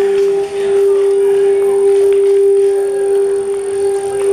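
Background music built on a single held drone note that stays at one steady pitch throughout.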